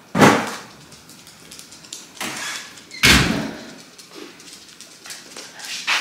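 A house door opening and shutting, heard as sudden thuds with a brief rush of noise. There is a sharp one just after the start, a lighter one about two seconds in, and the heaviest about three seconds in.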